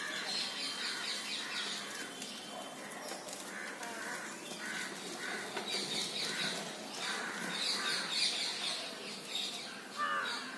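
Birds calling outdoors: a run of repeated short, harsh calls with higher chirps over them, fairly faint.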